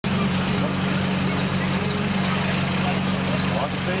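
Small engine running steadily at constant speed, typical of the portable fire pump used in a fire-attack run, with a crowd's voices in the background.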